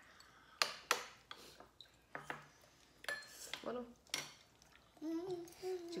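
Chopsticks and metal spoons clinking against ceramic bowls during a meal: scattered sharp clicks, several close together in the first few seconds.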